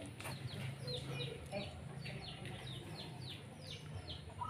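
Faint bird calls: many short falling chirps, about two or three a second, with a few lower calls among them.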